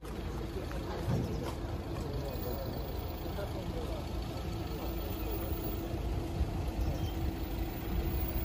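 A van's engine running slowly, with a steady hum, under the low murmur of a large crowd walking on a street.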